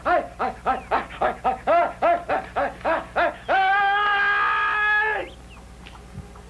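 A high-pitched voice-like call: a quick run of short rising-and-falling notes, about four a second, then one long held note that cuts off about five seconds in.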